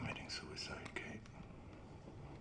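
A woman crying: shaky, breathy sobs and whimpers in the first second or so, then fading to quiet room tone.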